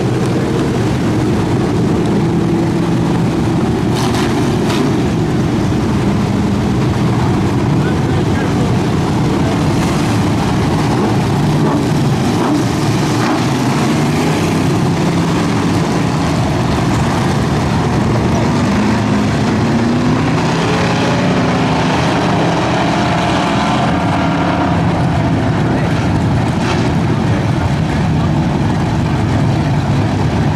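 Dirt-track street stock race cars' engines running at low speed, a steady, loud rumble with wavering pitch.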